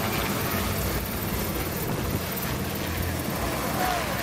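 Military helicopter hovering overhead, a steady rotor and engine noise.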